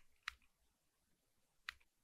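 Two single computer keyboard keystrokes, short sharp clicks about a quarter second in and again near the end, with near silence between.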